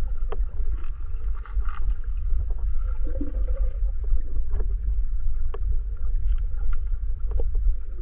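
Underwater sound picked up by a GoPro HERO9 held below the surface while snorkeling: a steady low rumble of water moving against the camera, with scattered faint clicks and ticks.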